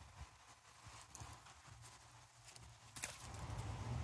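Soft, irregular knocks of footsteps on grass and a phone being handled as it is carried, with a sharper click about three seconds in, followed by a low rumble that rises toward the end.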